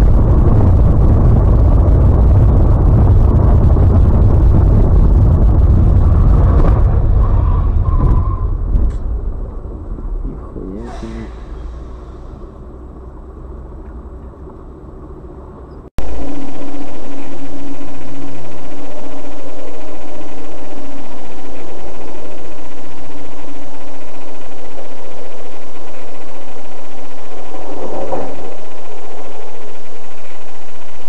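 Vehicle road and engine noise picked up by dash cameras. A loud, low rumble fades away over the first half. Then, after a sudden cut about halfway through, a steady, loud drone with a low hum runs on.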